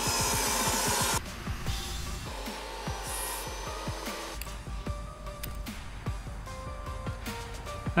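Table saw finishing a rip cut through a scrap 2x4. The cutting noise stops about a second in. Background music with a few light clicks follows.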